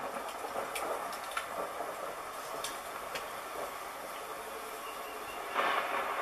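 Steady rushing noise with a few faint scattered clicks, an ambient sound effect in the music video's soundtrack.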